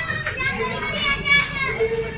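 Children's voices, high-pitched excited calling and chatter close by.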